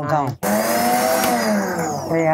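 Countertop blender run in one short burst, starting about half a second in and stopping near the end, its motor pitch rising and then falling as it chops a green vegetable mix.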